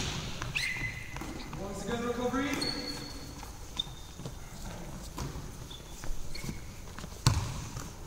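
Handball game in a sports hall: trainers squeak briefly on the wooden floor several times, and a player's voice rises in a shout about two seconds in. The handball hits with a thud at the start and again, louder, near the end.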